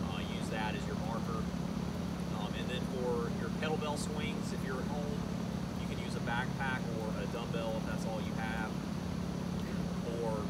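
A man talking over a steady low mechanical hum from outdoor air-conditioning condenser units.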